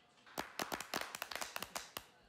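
Scattered hand clapping from a small audience, faint and irregular, starting about a third of a second in and stopping near the end.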